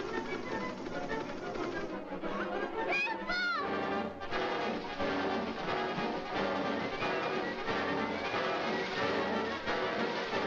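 Orchestral cartoon score with brass, and a brief high sliding sound about three seconds in.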